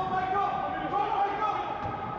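Footballers shouting on the pitch in long, raised calls that carry in an empty stadium, with a dull thud near the end, typical of a ball being kicked.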